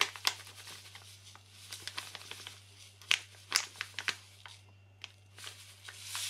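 Plastic packet of MSG crinkling and rustling in the hands as it is tipped and shaken out into a glass bowl, in short irregular bursts.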